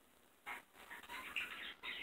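Pet parakeets (budgerigars) chirping softly, a string of short calls starting about half a second in.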